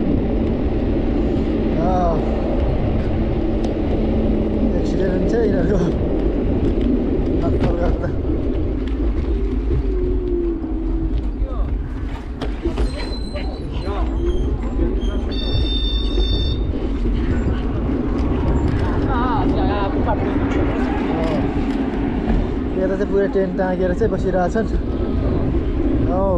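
Wind rushing over the microphone while riding an e-bike along a paved path, with snatches of voices and a brief high ringing tone about two-thirds of the way through.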